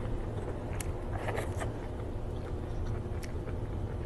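Close-miked chewing of steamed squid with the mouth closed, with a few short wet mouth clicks about a second in and again after three seconds, over a steady low background hum.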